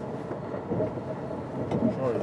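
Steady running rumble of a moving train, heard from inside the passenger carriage.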